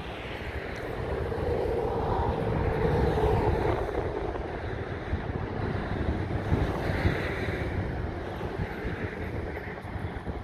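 Wind buffeting the microphone, a steady rumble that swells to its loudest a couple of seconds in and then eases.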